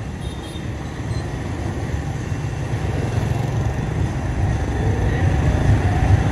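Riding noise from a moving motorbike: low wind rumble on the microphone with engine and tyre noise, growing louder as it gathers speed, over passing street traffic.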